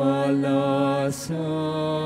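Slow church hymn sung in long held notes, with a change of note about a second in.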